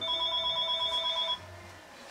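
An electronic telephone ringing: one high-pitched, fluttering trill lasting about a second and a half, then cutting off.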